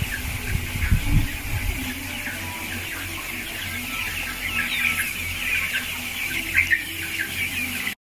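A large flock of chicks peeping continuously, many short high chirps overlapping, over a faint steady hum. Low rumbling thumps sound in the first two seconds. The sound cuts off suddenly just before the end.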